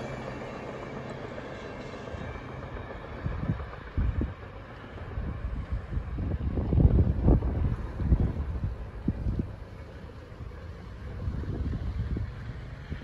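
Passing train's rumble fading as it moves away down the track. From about three seconds in, wind buffets the microphone in irregular low gusts.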